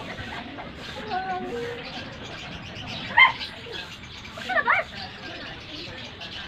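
Cats calling at each other in a tense face-off: a falling, drawn-out call about a second in, a short loud cry just after three seconds, and a wavering call near the five-second mark.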